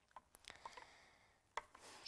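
Near silence with a few faint, short clicks from a hand working glue slime in a clear plastic bowl.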